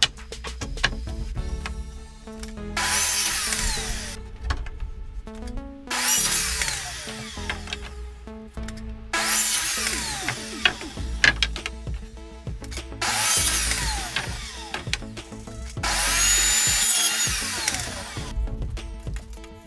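DeWalt sliding miter saw cutting through wooden boards five times, each cut lasting about two seconds, with a high whine of the blade over the noise of the cut.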